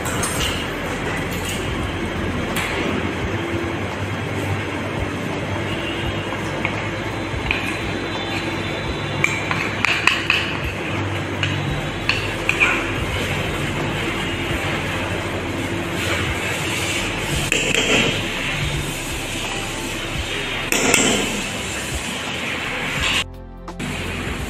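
A wire whisk and spoon clinking irregularly against a stainless steel mixing bowl while melted chocolate is scraped in and beaten into a creamed butter, sugar and egg mixture, over steady background music.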